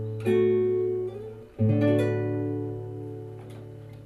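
Classical nylon-string guitar played fingerstyle: a plucked chord about a quarter second in, then a final chord about a second and a half in, left to ring and fade away.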